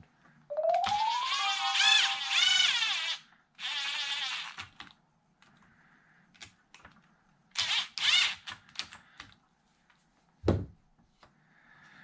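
A short added music sting with a rising slide and warbling high notes, with two shorter bursts of the same later on. In between come light clicks and taps of plastic RC car parts being handled, and one low thunk about ten and a half seconds in.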